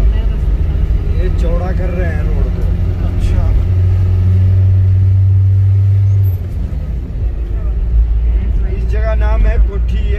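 Engine and road rumble inside a moving car's cabin, with a steady low drone from about four seconds in that drops away suddenly about six seconds in.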